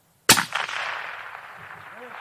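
A single shot from a suppressed rifle about a quarter second in, a sharp crack followed by an echo that rolls away and fades over more than a second.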